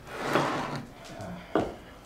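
Kitchen handling noise at a counter: a longer scraping rattle in the first second, then a sharp knock about one and a half seconds in, like a drawer or crockery being set down.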